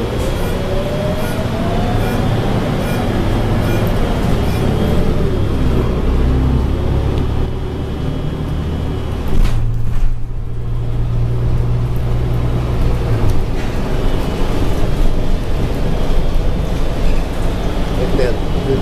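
City transit bus running, heard from inside the cabin: a steady low drivetrain hum and road noise, with a whine rising in pitch over the first few seconds. A brief louder rush comes about halfway through.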